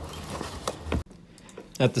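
Steel hand trowels scraping and pressing wet cement repair mortar onto a concrete stair riser, faint, with a few small metal clicks; the sound cuts off about a second in.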